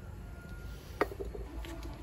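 A single sharp knock about a second in as an aluminium drink can is set down on a wooden stand, with a faint bird call in the background.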